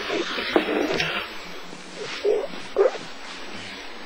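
A sleeping man snoring, in rough irregular breaths, with two louder snores a little past the middle.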